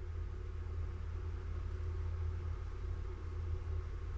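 Steady low hum with a faint even hiss: room tone, with no distinct event.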